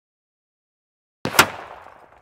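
A single sudden bang, a sound effect laid over the title cards, about a second and a quarter in, fading out over roughly a second.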